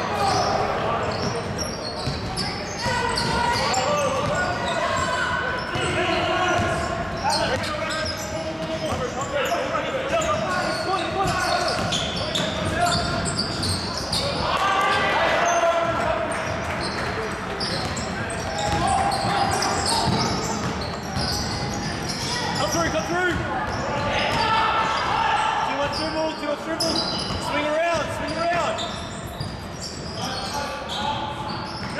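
Basketball being dribbled and bounced on a wooden gym floor during play, with repeated knocks echoing in a large hall. Players' and spectators' voices call out over it.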